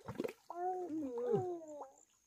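A baby's drawn-out, wavering vocal cry, starting about half a second in and lasting about a second and a half before sliding down in pitch. Brief wet, splashy sounds come just before it.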